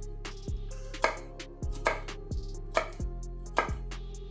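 Chef's knife cutting through a garlic clove and knocking on an end-grain wooden cutting board, about eight separate knocks, unevenly spaced.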